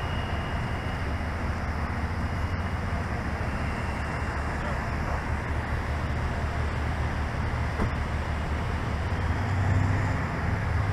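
Steady outdoor road-traffic noise: an even hiss over a constant low engine hum, with no distinct events.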